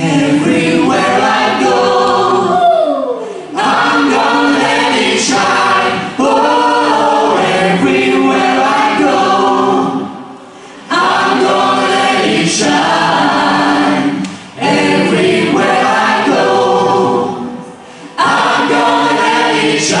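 A mixed group of men and women singing together in chorus into microphones, in phrases broken by short pauses every few seconds.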